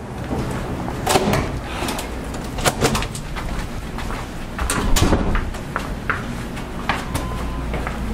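A push-bar door clunks open about a second in, followed by footsteps and scattered knocks and clicks along a hallway over a steady low hum.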